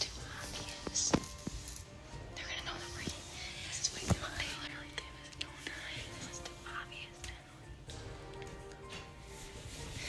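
Hushed whispering voices over soft background music.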